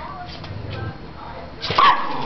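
A small dog gives one short, loud bark near the end: a defensive warning snap at a puppy that crowded it.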